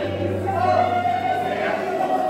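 Many voices of a congregation singing and calling out together over a keyboard holding sustained chords, with a steady low bass note that starts at the beginning.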